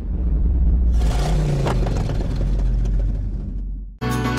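A loud, deep rumble with a hissing wash over it, swelling about a second in and fading near the end before it cuts off sharply: a rumbling transition sound effect.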